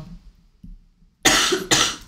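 A person coughing: two short harsh bursts in quick succession about a second and a quarter in, after a near-quiet pause.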